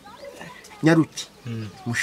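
A man's raised voice calling out short, emphatic phrases with pauses between them.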